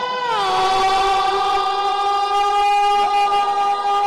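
A man belting one long, loud sung note that steps down in pitch about half a second in and then holds steady.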